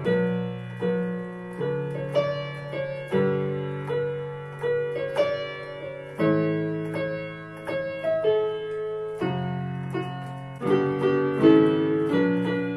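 Digital piano playing a slow melody with both hands: right-hand notes struck about one or two a second over held low chords, each note fading after it is struck.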